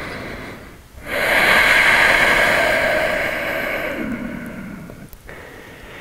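A man's big audible breath: a long, noisy breath out that starts suddenly about a second in and slowly fades away over about four seconds.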